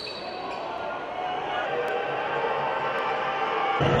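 Game audio from a basketball arena: a ball bouncing on the court under a steady wash of crowd noise that gradually builds, cutting abruptly to a louder stretch just before the end.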